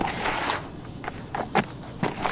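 Hands digging and stirring through a basin of crumbly sand-cement mix. First comes a gritty rustle of shifting grains for about half a second, then several sharp crunches as clumps crumble, the loudest about a second and a half in.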